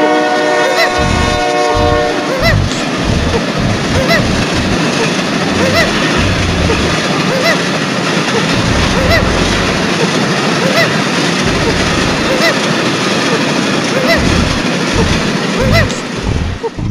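Train horn sounding a multi-note chord that cuts off about two seconds in, followed by the loud, steady rumble and clatter of a train running.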